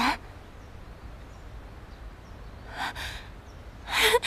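One short, breathy gasp about three seconds in. There is low background hiss, and a brief spoken word ends at the very start.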